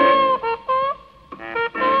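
Jazz trumpet playing short phrases of held notes, some bent at their ends, with a brief break about a second in.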